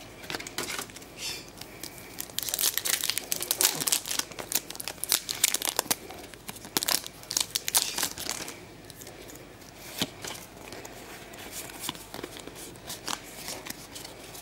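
Foil wrapper of a Pokémon booster pack crinkling and tearing as it is opened by hand, loudest over the first eight seconds or so, then fainter scattered rustles.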